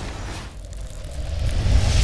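Sound design for a TV sports show's closing logo animation: a whooshing swell with a low rumble that builds to its loudest hit near the end.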